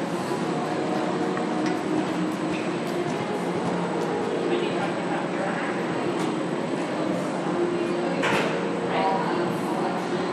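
Indoor arena ambience: indistinct background voices over a steady hum, with a brief louder noise about eight seconds in.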